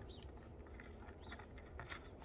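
Faint handling noise: a few soft clicks and rustles from hands moving servo cables in a foam airplane fuselage, over a low steady hum.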